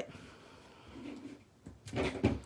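Quiet desk sounds: faint handling of a stamp pad and a clear acrylic stamp block, with a few small clicks near the end.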